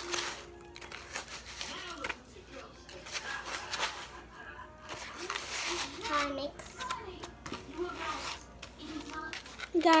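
A spoon stirring and scraping a gritty brown-sugar, honey and coconut-oil scrub in a bowl, a scratchy, crunchy sound in short strokes. In the second half a child's voice murmurs or sings quietly over it.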